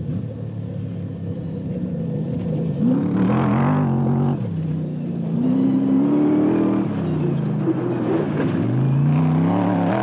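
Off-road race buggy's engine revving hard under acceleration, its pitch climbing three times as it works up through the revs, and growing louder as the car comes closer.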